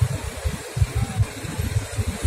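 Wind buffeting the microphone outdoors: an uneven low rumble that swells and drops in quick gusts.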